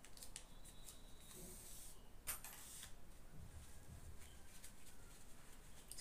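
Faint rustling and light clicks from handling fabric and a small cover button, with one sharper click about two seconds in.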